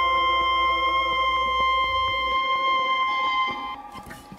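The song's closing held keyboard chord: steady sustained tones whose bass drops out a little past two seconds in, the chord then falling away about three and a half seconds in as the song ends.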